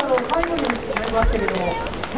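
People talking nearby, the words indistinct, with a few sharp clicks.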